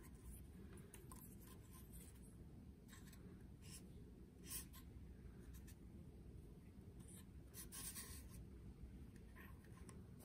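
Near silence: faint rustles and small ticks of paper strips and insect pins being handled on a styrofoam spreading board, over a low steady room hum.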